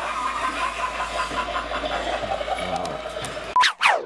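A steady machine-like hum with a faint, quick repeating pattern. About three and a half seconds in, it cuts to a short sharp tone and fast falling swooshes, the start of a cartoon intro jingle.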